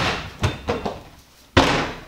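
A wooden kitchen cabinet door is handled, with a sharp click at the start and a few light knocks. About one and a half seconds in it swings shut with a loud slam.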